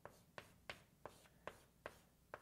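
Faint writing sounds: about six short ticks, two to three a second, from a pen-type writing tool touching the writing surface as an expression is written out.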